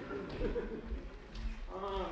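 Footsteps on a wooden floor, with a short voice sound about half a second in and again near the end.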